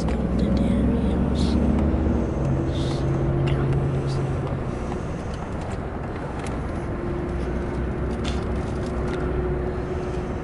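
Steady low rumble of a car heard from inside its cabin, with a few faint clicks and ticks.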